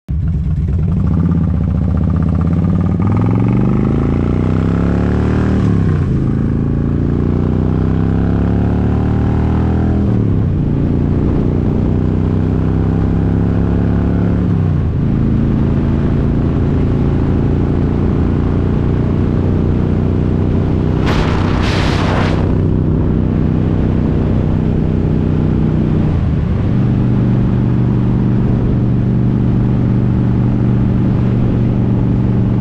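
Harley-Davidson Ultra Classic's V-twin engine accelerating through the gears. The pitch climbs and drops at upshifts about every four to five seconds, then settles to a steady cruise with one more shift near the end, under a rush of wind. A brief hiss sounds about 21 seconds in.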